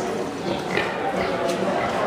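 Yorkshire hogs grunting over a steady murmur of people talking, with a single sharp click partway through.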